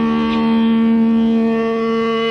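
A punk band's lo-fi demo recording: one droning note held steady at a single pitch at the opening of a song.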